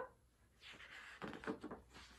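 Faint rustling of a paperback picture book's pages being handled and turned, with a few soft clicks, starting about half a second in.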